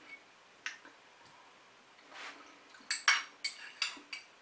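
Metal spoon clinking and scraping against a small ceramic bowl as stew is scooped up: a few light clicks, several close together near the end.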